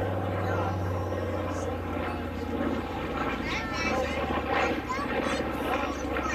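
Twin Wright R-2600 radial engines of a North American B-25J Mitchell droning steadily during a flypast, with people talking over it in the second half.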